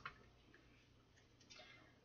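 Near silence with a couple of faint clicks from tarot cards being handled: one right at the start, a fainter one about a second and a half in.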